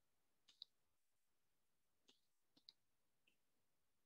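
Near silence, broken by a few faint clicks of a stylus tip tapping on a tablet's glass screen while writing.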